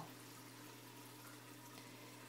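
Near silence: faint, steady running water in a turtle aquarium, with a low, even hum.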